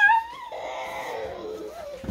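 A young girl's high, drawn-out wordless vocal cry. It is loudest and sharpest at the very start, then wavers on at a lower level for the rest of the two seconds.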